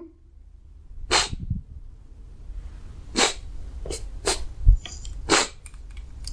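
A man crying: about five sharp, wet sniffs and sobbing breaths through the nose, spaced roughly a second apart.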